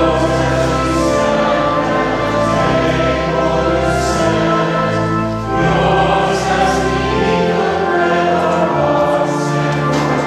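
Church choir singing a communion hymn in sustained, legato phrases over organ accompaniment, with a short breath between phrases about halfway through.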